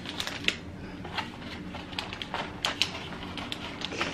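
Plastic MRE flameless ration heater bag crinkling and rustling as it is pushed into its cardboard sleeve, in irregular small clicks and crackles.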